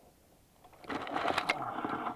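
Black Widow 260 racing quadcopter's motors spinning up about a second in, a steady buzz with sharp clicks through it, heard from the drone's onboard camera.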